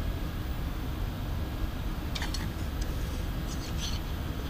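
Steady room hum with a few faint clicks and taps from about halfway on, as a nameplate with loosely started screws is handled against aluminium extrusion.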